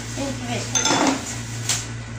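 Dishes clinking as food is handled on plates: one ringing clink just under a second in and a sharper knock near the end.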